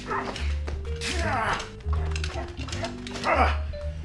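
Dog-like barks and yelps, several of them, the loudest about a second in and near the end, over background music with a steady low beat.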